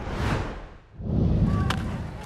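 Broadcast graphics transition sound effect: a whoosh that falls in pitch over about a second, then a deep low impact about a second in, with a rumbling tail.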